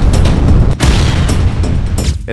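Explosion booms over music, with a fresh blast just under a second in.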